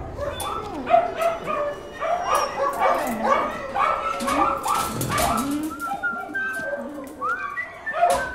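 Several dogs whimpering and yelping in a kennel, a constant overlapping run of short high cries, with a rising whine near the end. Scattered sharp knocks sound among the cries.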